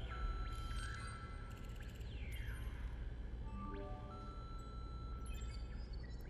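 Quiet ambient music with scattered chime-like tones, short pitch glides and a few stepped notes over a steady low rumble.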